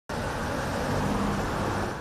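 Road traffic: cars and pickup trucks driving past, a steady rush of engines and tyres.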